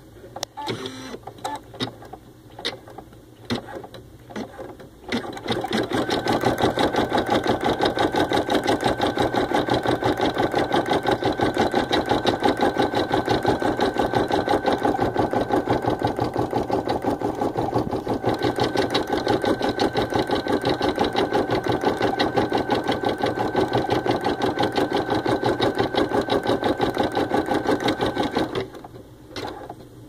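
Baby Lock Ellure Plus embroidery machine stitching at a fast, even rhythm. It starts about five seconds in, after a few scattered clicks, and stops shortly before the end.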